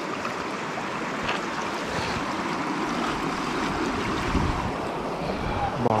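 Shallow, fast stream running over a stony bed, a steady rushing sound, with low wind rumble on the microphone in the middle.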